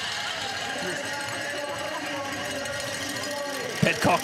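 Trackside crowd noise: spectators chattering and calling along the course, a steady blend of distant voices.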